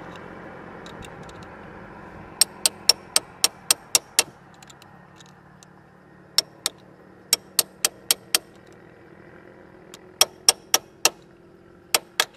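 Runs of sharp metallic clicks, about four a second, from hand tools being worked on a motorcycle's rear sprocket and axle area, over a faint steady hum.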